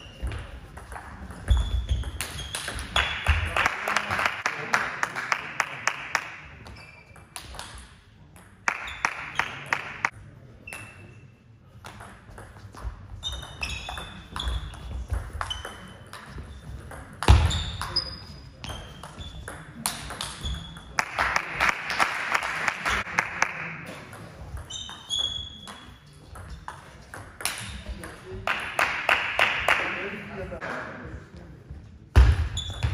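Table tennis rallies: the ball clicking back and forth off bats and table. Between points come several bursts of spectator clapping with voices.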